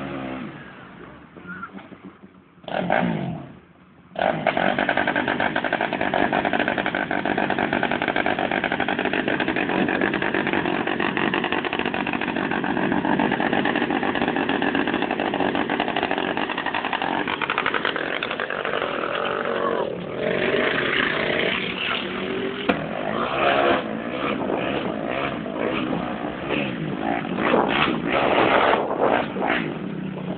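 ATV and side-by-side engines running loudly and steadily from about four seconds in, after a brief quieter stretch, with the revs rising and falling more unevenly over the last ten seconds.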